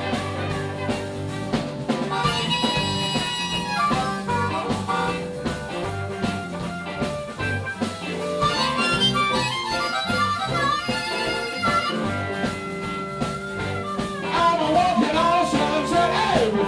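Live blues band in an instrumental break: a harmonica solos with long, bending held notes over electric guitars and drums.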